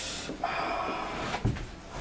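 A sudden harsh noise from a mental-handicap ear radio. A hiss-like burst is followed by about a second of rougher noise, with a low thump near the end.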